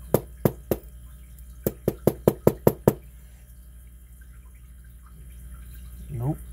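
Small metal parts of a gutted lock cylinder tapping and clicking as they are handled: the plug, its pins and a brass rod. There are three sharp taps, then a quick run of about eight more.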